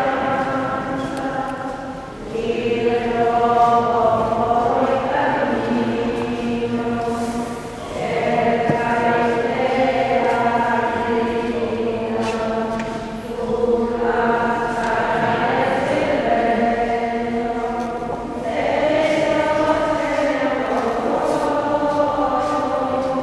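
A choir singing a slow communion hymn in long phrases of about five seconds, with short breaks for breath between them.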